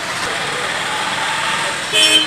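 Steady outdoor street noise, a continuous hiss, with faint voices in the background.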